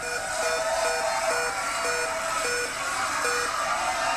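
Game-show Big Wheel spinning down: its ticks come further and further apart as it slows to a stop, over steady held tones.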